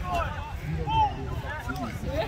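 Several voices calling and shouting across a sports field, one call louder about a second in, over a steady low rumble.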